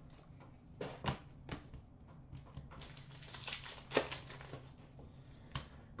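Trading cards being handled: a stack of hockey cards flicked through and set down on a glass counter, giving scattered light clicks and a short stretch of rustling about three to four seconds in.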